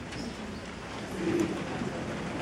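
Congregation shifting and getting up in a large church sanctuary: a diffuse rustle of movement, with one short low voice-like sound a little past halfway through.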